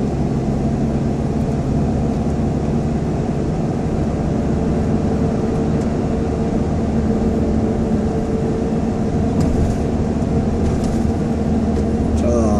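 Steady low drone of a car driving, heard from inside the cabin: engine and tyre noise with a faint steady hum.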